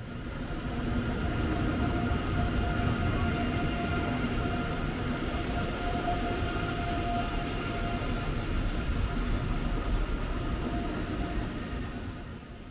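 Station-platform sound of a high-speed train standing alongside: a steady low rumble and hum with a few held tones. It swells in over the first second, then holds level.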